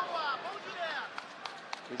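Voices shouting in an arena over a low crowd hubbub, with a couple of short sharp knocks a little past the middle.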